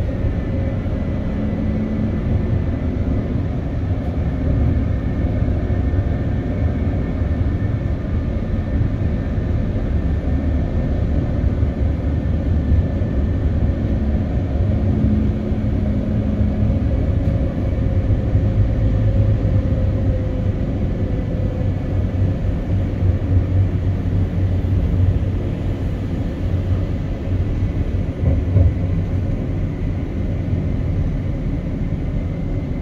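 Inside a CAF Urbos 100 light rail tram running along the street: a steady low rumble with a faint whine that dips slightly in pitch midway.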